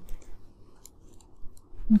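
Typing on a computer keyboard: a few scattered, soft keystrokes.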